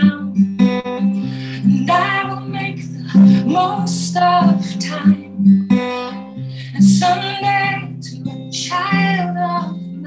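A woman singing a song while accompanying herself on a strummed acoustic guitar, the sung phrases coming every few seconds over the chords.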